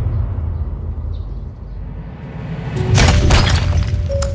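Film sound effects: a low rumble fading away, then about three seconds in a crash of a heavy stone brick striking and breaking, with scattering debris. Music plays underneath.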